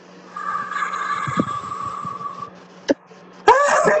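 A steady low hum, with a held, two-toned hissy sound for about two seconds and a single sharp click. Then a man bursts out laughing loudly near the end.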